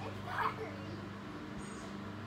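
A brief high-pitched cry from a voice about half a second in, over a steady low hum.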